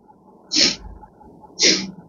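Two short, sharp bursts of breath from a man, about a second apart.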